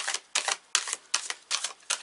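A deck of tarot cards being shuffled by hand, giving crisp card-on-card slaps at an even pace, about six in all, roughly two or three a second.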